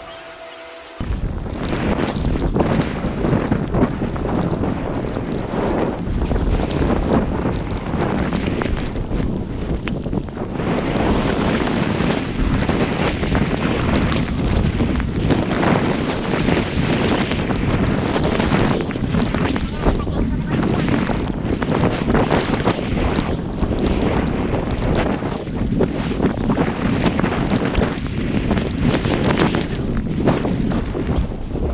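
Wind rushing over a GoPro action camera's microphone as the skier goes downhill, a loud steady noise with small gusty swells that starts about a second in.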